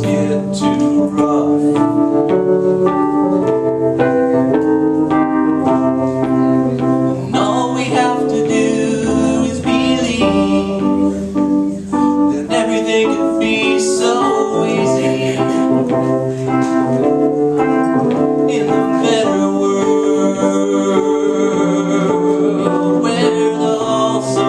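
Electronic keyboard playing an instrumental passage of a song: sustained chords that change about every second over a stepping bass line.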